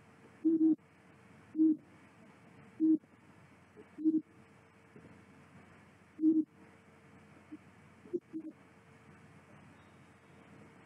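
Several short hummed 'hmm'-like vocal sounds at irregular intervals, such as brief replies during a phone call. A faint steady hum lies underneath.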